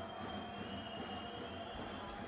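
Arena crowd noise with fans' drums beating in the stands, and a thin steady high tone for about the first second and a half.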